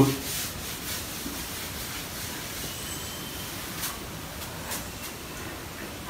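Faint rubbing of a cloth wiping marker writing off a whiteboard, over steady background hiss, with a couple of soft knocks about four and five seconds in.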